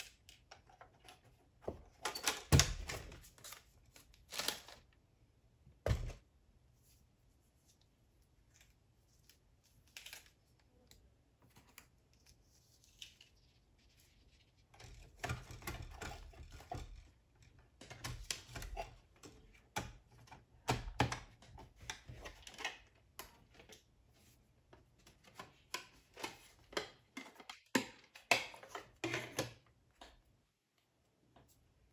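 Hard plastic clicks, knocks and rattles of a Brother RJ4030Ai mobile thermal printer being handled as its paper compartment is opened and loaded and its battery cover taken off. Two sharp knocks stand out a few seconds in, then irregular runs of clicking fill most of the second half.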